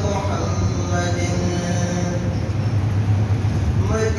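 Faint male voices chanting salat o salam over a steady low rumble, in a gap between the lead reciter's sung lines. A voice glides up near the end as the singing returns.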